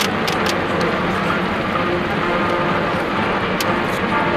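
A stadium crowd and team cheering and shouting together in a steady, loud wash of many voices, with a few sharp cracks.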